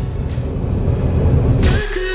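Road noise of a moving car heard from inside the cabin: a steady low rumble with hiss. Music comes in near the end.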